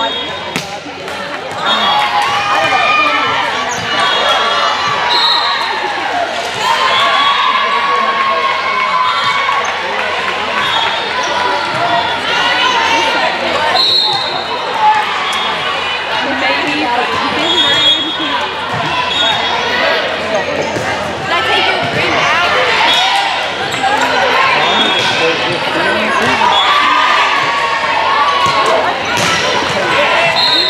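Indoor volleyball rallies in a gym: the ball struck on serves and hits, with short high squeaks of sneakers on the court recurring every few seconds, over chatter and calls from players and spectators.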